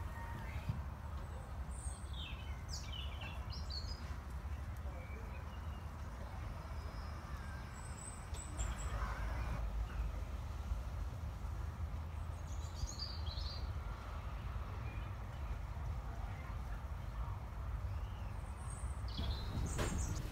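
Small birds chirping every few seconds over a steady low outdoor rumble.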